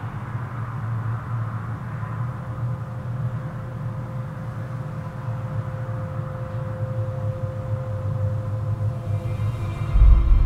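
Dark, suspenseful background music: a low sustained drone, joined by a thin held tone from a few seconds in until near the end.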